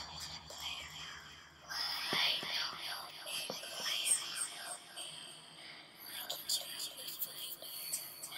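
A person whispering quietly in short stretches, starting a couple of seconds in, with a brief pause past the middle.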